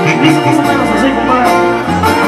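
Loud live regional Mexican band music played from a stage, with a deep bass line and steady drum hits under the melody.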